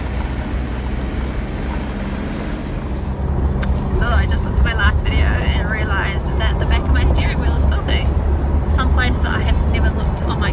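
Car running on the road, a steady low engine and road rumble that grows fuller inside the cabin after about three seconds. From about four seconds a voice comes and goes over it.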